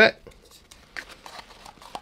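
Faint scattered clicks and light crinkling of plastic paint cups being handled.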